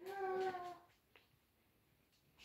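A hunting dog's faint, distant drawn-out cry: one pitched call, falling slightly, lasting under a second at the start.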